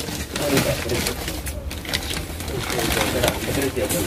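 Plastic wrapping rustling and crinkling as brass vessels are handled, with voices in the background.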